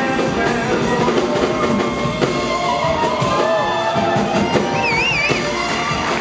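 A live jazz band playing: a baritone male voice sings over upright double bass, piano and drums.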